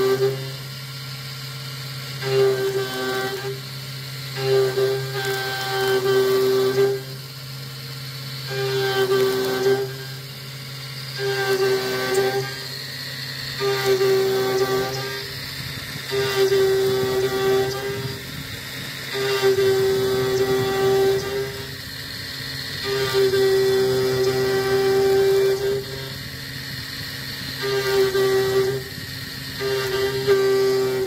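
Taig CNC mill with a BT30 spindle and 1200 W motor, cutting metal with a half-inch three-flute end mill at about 7,800 rpm and 39 inches a minute on an adaptive-clearing toolpath. The spindle hums steadily under a high-pitched cutting whine that sets in and drops away every one to three seconds as the cutter loads and unloads on its looping passes.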